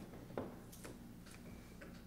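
Quiet room tone: a steady low electrical hum with a few faint, scattered small clicks and handling noises, the sharpest about a third of a second in.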